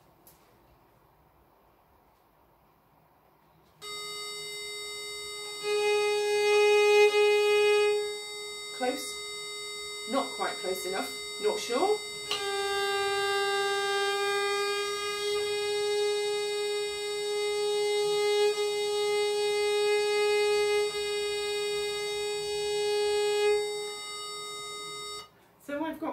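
A treble viol is bowed in long notes on one string against a steady electronic reference drone that starts about four seconds in. This is the string being tuned to the reference pitch. Around ten seconds in the string's pitch wavers and slides as the peg is turned, then it settles into a long steady note in unison with the drone.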